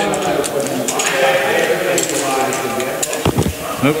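A man's drawn-out, wordless voice sound, with light clinks of metal climbing hardware being handled.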